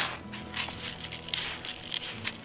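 Gloved hands stirring compost and pelleted organic fertilizer together in a small plastic bucket: faint gritty scraping and rustling with a few small scratches.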